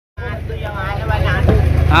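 People talking close by over a steady low engine hum.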